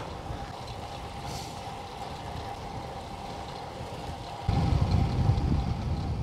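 Wind and rolling noise on a bike-mounted action camera's microphone while riding a road bike, with a faint steady hum. About four and a half seconds in it jumps to louder, low wind buffeting on the microphone.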